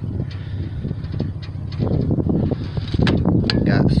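Low outdoor rumble with wind on the microphone and camera handling noise, broken by a few sharp clicks and knocks in the middle and near the end.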